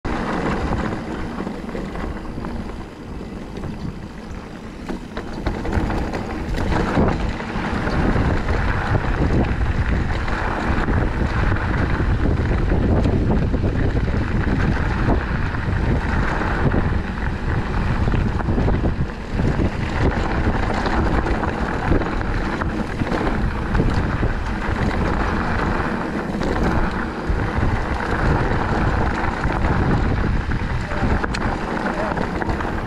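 Wind buffeting the camera microphone over the rumble and rattle of a mountain bike rolling along a rough dirt trail, with short knocks from bumps. It gets louder about seven seconds in and stays loud.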